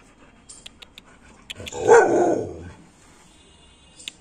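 American Pit Bull Terrier giving one loud, drawn-out bark about two seconds in, after a few faint clicks.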